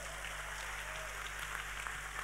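Audience applauding steadily at a low level, over a steady low hum.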